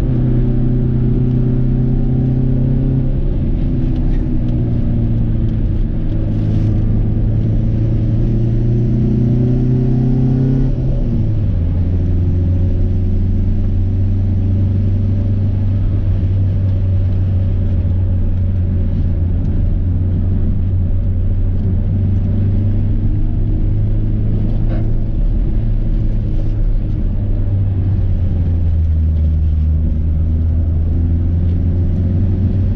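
Seat 850's rear-mounted four-cylinder engine heard from inside the cabin while driving. The engine note climbs under acceleration, dips about three seconds in and climbs again, then falls sharply about eleven seconds in and holds a steady lower note, dropping once more near the end.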